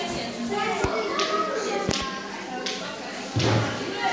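Children's voices echoing in a large hall, with three sharp knocks in the first two seconds and a louder thump near the end.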